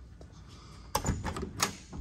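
A car door's handle and latch clicking and knocking as the old door is opened: a quick cluster of sharp clicks about a second in.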